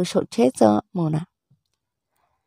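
A voice speaking for about a second, then dead silence.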